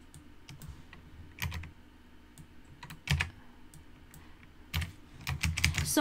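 Scattered keystrokes on a computer keyboard, a few at a time with short pauses between, and a quick run of keys near the end.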